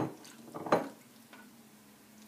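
A spoon stirring marinated chicken pieces in a frying pan: two wet scrapes and knocks against the pan, one at the start and a louder one about three-quarters of a second in, then quieter stirring.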